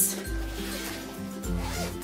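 Suitcase zipper being pulled open to unzip a second compartment, a continuous rasp, over background music.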